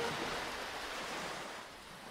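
A rushing, surf-like wash of water sound effect, an even hiss without pitch, fading gradually away.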